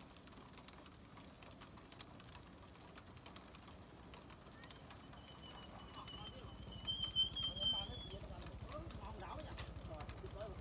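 Chain-driven rotisserie turning a row of duck spits over charcoal, its chain and sprockets clicking in a fast, even rhythm that grows louder past the middle. A high, thin, steady tone sounds for about three seconds in the middle.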